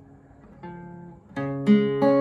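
Acoustic guitar, capoed at the first fret, with single strings of a C major chord shape picked one at a time with a plectrum: a soft note about half a second in, then two sharper plucks in quick succession near the end, the second the loudest.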